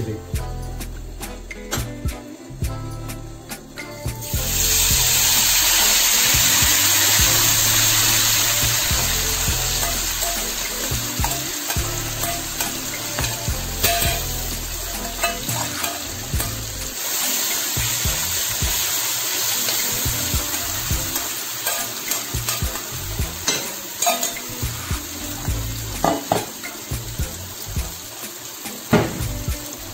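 Food frying in hot oil in a nonstick wok: a loud sizzle starts suddenly about four seconds in as food goes into the oil, then slowly eases into steady frying. Later, spoon scrapes and taps are heard as marinated duck meat is scraped from a bowl into the wok and stirred.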